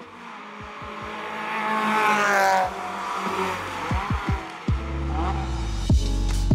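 Race car accelerating hard down the circuit straight, its engine note climbing and growing louder to a peak about two and a half seconds in, then dropping away as it passes. Electronic music with deep kick drums comes in underneath.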